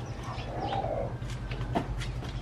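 A pigeon cooing briefly, about half a second in, over a steady low hum, with a sharp click near the end.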